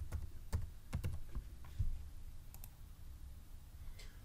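Typing on a computer keyboard: a run of keystrokes in the first two seconds, then two more clicks about two and a half seconds in, over a low steady hum.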